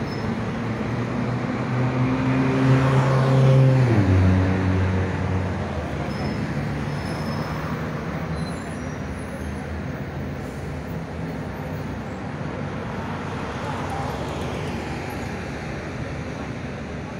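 Road traffic, with a motor vehicle passing close by about three to four seconds in: its engine hum grows louder and drops in pitch as it goes past, then steady traffic noise continues.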